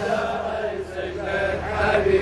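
A crowd of men chanting a Shia latmiya mourning refrain together, softer than the lead reciter's loud line just before.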